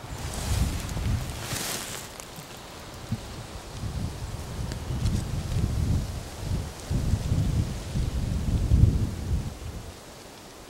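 Wind buffeting the microphone in uneven low gusts, with a brief rustling hiss of vegetation about a second in.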